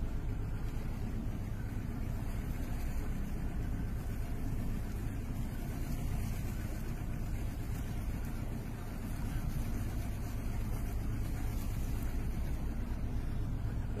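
Boat engine running steadily, a low even hum under a noisy wash, dipping briefly about two-thirds of the way in.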